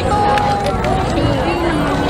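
Hmong kwv txhiaj sung poetry over crowd chatter: a voice holds long, level notes and steps from one pitch to the next.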